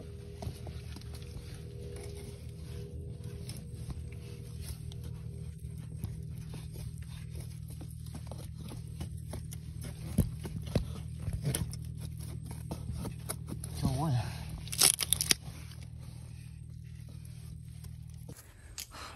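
Hands digging and scraping in mangrove mud and among the roots at a crab burrow, with irregular crackling, crunching and snapping of twigs and debris, over a steady low hum. A short vocal sound comes about fourteen seconds in, followed by a loud sharp noise.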